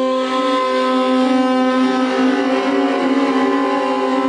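Saxophone holding a loud, long note that wavers slightly in pitch and turns rougher toward the end, with piano accompaniment.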